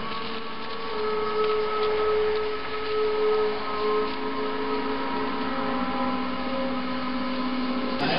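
Ambient drone music: several steady tones held for seconds at a time, with the held notes changing every few seconds.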